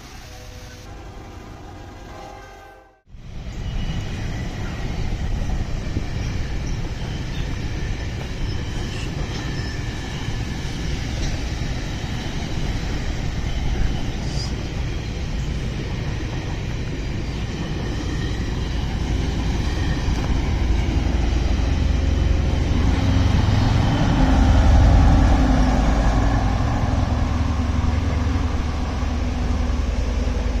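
Brief intro music, then from about three seconds in a GO Transit bi-level commuter train passing on the rails: a steady low rumble of wheels and cars that swells loudest about three-quarters of the way in as its diesel locomotive comes by.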